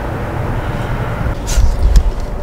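Steady low outdoor rumble, with a louder low bump or gust about one and a half seconds in.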